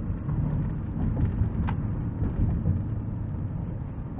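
Inside a moving car's cabin: steady low rumble of the car's engine and road noise while driving, with a single brief click about two-thirds of the way through.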